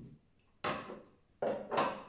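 Small plates handled on a hard tabletop: three short knocks and rustles, the clearer two about half a second and a second and a half in.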